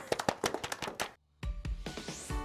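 A small group of people clapping their hands for about a second, cut off abruptly. After a short silence, upbeat music with a thumping beat starts.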